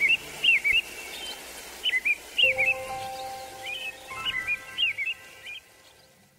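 Birds chirping: several groups of short, quick chirps, over a few soft held notes that come in about two and a half seconds in. It all dies away near the end.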